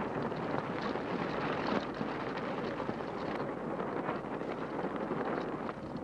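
Steady rushing wind noise on the microphone with many small crackles, from the live location sound of an old Super 8 dual-track magnetic film.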